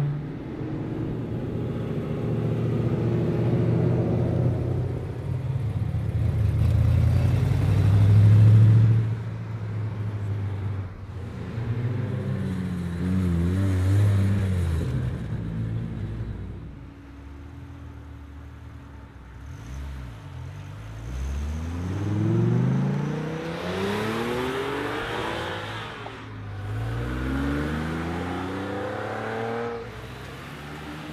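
Sports and muscle car engines passing one after another: a deep, steady low rumble at low revs through the first half, then several rising revs through the gears as cars accelerate away in the second half.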